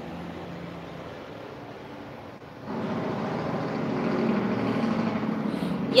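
A motor vehicle's engine noise that comes in suddenly about halfway through and keeps building, over a steady background hum.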